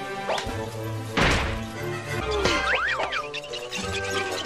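Orchestral cartoon underscore, with one loud whack about a second in and quick whistle-like glides up and down in pitch near the middle.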